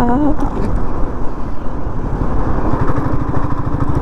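Royal Enfield Meteor 350's single-cylinder engine running under way, with a steady low beat of firing pulses that grows plainer in the second half, over wind and road noise.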